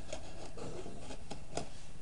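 Handling noise: steady rubbing and scraping with a few light clicks.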